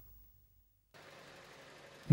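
Near silence, with a faint steady hiss coming in about a second in.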